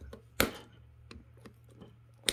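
A single sharp metallic click about half a second in, then a few faint ticks: a hand tool working the pin that retains the front wheel on the steering spindle, bending its end over to lock it.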